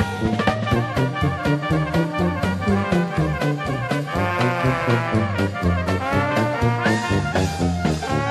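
Traditional Dixieland jazz band playing an up-tempo instrumental, trumpet, trombone and clarinet weaving over a steady beat from tuba, banjo and drums.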